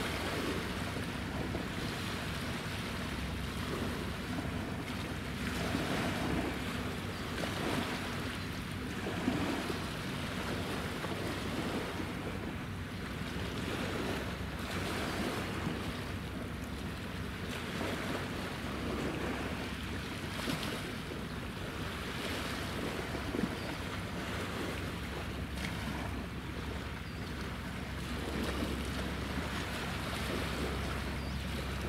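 Water lapping and wind buffeting the microphone over a low steady hum from a passing naval escort ship's engines.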